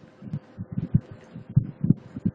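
Handling noise: a quick, irregular run of soft low thuds, about a dozen in two seconds.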